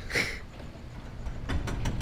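A garage door opener starting up near the end, a low rumble with a few clicks, as the door begins to lift in response to a radio code sent from a reprogrammed IM-ME toy. Before that, the background is quiet.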